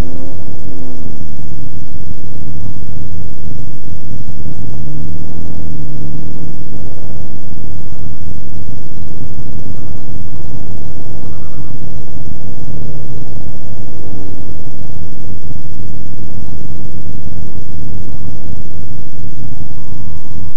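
Vehicle engine running with a heavy low rumble, its pitch rising and falling in a few slow sweeps.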